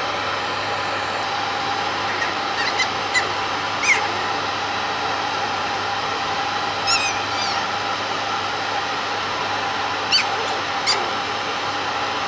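Pet grooming dryer blowing steadily while a toy poodle puppy gives about five short, high-pitched whines and squeals, a few seconds in and again near the end, protesting at being held to have its paws dried.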